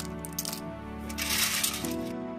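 Small snail shells clinking against one another and the aluminium pan as a handful of wet river snails is dropped back into the rinse water, over background music.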